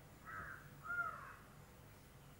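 A crow cawing twice in the background, two short calls about half a second apart, the second louder.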